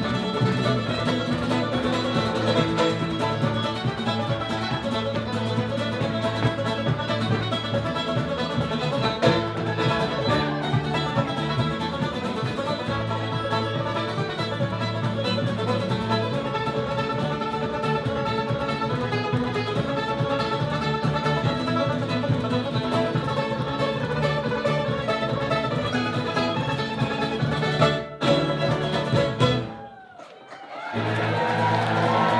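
Acoustic guitar and fiddle playing an Irish traditional instrumental tune together live, cutting off abruptly at the end of the tune.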